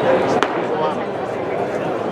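Background chatter of spectators' voices in a ballpark crowd, with one sharp click about half a second in.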